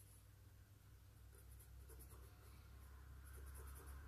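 Faint scratching of a charcoal stick on drawing paper, in short dabbing strokes that come in a few brief spells.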